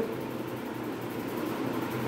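Steady background room noise: a continuous even hiss and hum with no distinct events.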